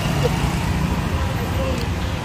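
Street traffic: small motorcycles and cars passing, a steady engine rumble with faint voices in the background.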